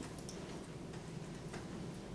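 A few faint, irregularly spaced clicks over a steady low room hum.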